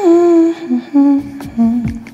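A voice humming a short tune in held notes that glide downward in pitch, with a few sharp clicks in the second half.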